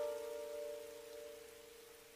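Background music: plucked notes of a zither-like string instrument ringing on with a slight waver and slowly fading away.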